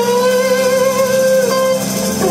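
Live band music with no vocal: one steady note held for nearly two seconds over the band's bass and guitar, breaking off near the end.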